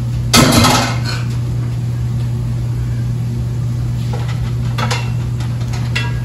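Kitchen cookware being handled: one loud clank about half a second in, then a few lighter knocks and clicks near the end, over a steady low hum.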